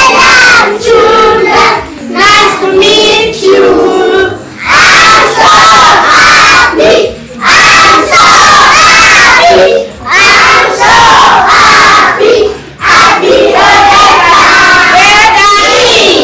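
A group of young children chanting a song together loudly, in short phrases with brief pauses between them.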